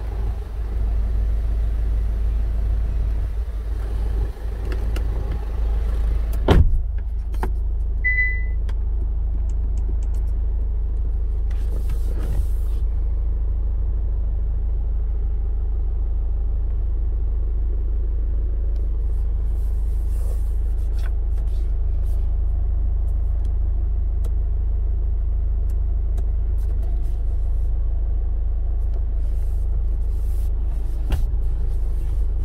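A Hyundai Santa Fe engine idling in park, heard from inside the cabin as a steady low rumble. A single sharp knock comes about six and a half seconds in, and a short electronic beep about eight seconds in.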